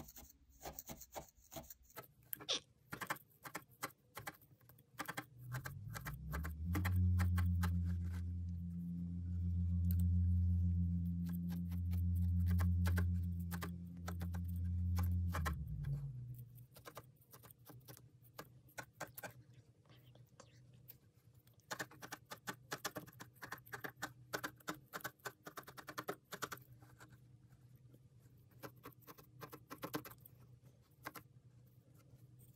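Felting needle in a wooden handle stabbing core wool into place over a wire armature: runs of rapid, dry ticks. A loud low steady hum comes in about six seconds in and fades out around sixteen seconds.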